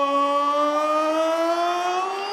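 A ring announcer's voice over a microphone, holding one long note that rises slightly as he draws out a fighter's name in a sung-out introduction.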